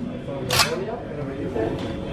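A single sharp mechanical clack about half a second in, as a hand-operated card-stamping press is pushed down onto a card.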